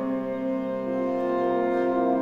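Military concert wind band playing slow, sustained chords, with a new note joining the chord about a second in.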